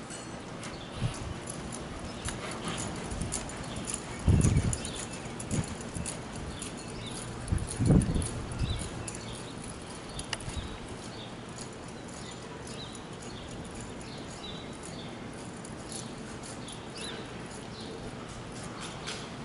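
Horse's hooves thudding and scuffing in soft arena dirt as it lopes and spins, with two heavier low thumps about four and eight seconds in. Small birds chirp in the background.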